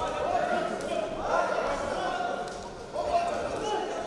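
Indistinct voices calling out, echoing in a large hall, with a couple of dull thuds as the boxers trade and clinch.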